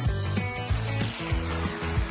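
Background music with a steady beat, over a soft hiss of breath blown through a sock soaked in bubble mixture and stretched over a cut plastic bottle, bubbling the soapy liquid into foam.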